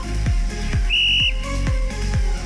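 Electronic dance music with a steady kick-drum beat, and about a second in a single short, high whistle blast, the cue that starts an exercise interval.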